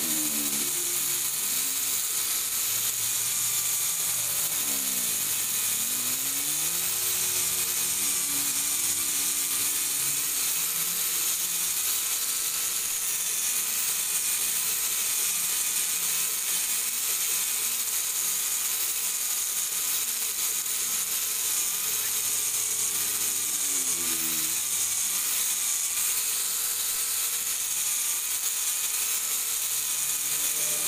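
Power drill spinning a sanding disc against a wooden knife handle: a steady motor whine over the hiss of sanding. The motor's pitch sags and recovers briefly a few times, near the start, around five seconds in and again about two-thirds of the way through.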